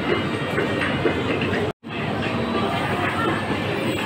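A steady rattling, rolling noise in a supermarket aisle, cut to dead silence for a split second a little under halfway through.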